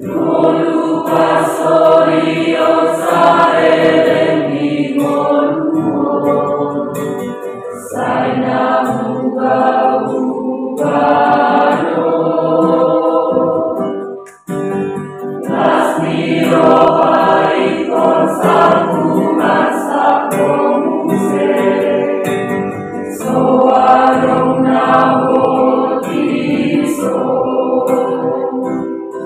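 Mixed youth choir of girls and boys singing a praise hymn together, phrase after phrase, with a brief break for breath about halfway through.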